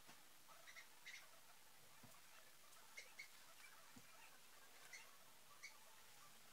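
Near silence: room tone with faint, short high-pitched chirps or squeaks scattered about once a second, and two soft low thumps.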